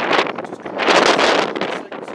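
Gusting wind buffeting the microphone: a loud rushing that swells twice and dies down near the end.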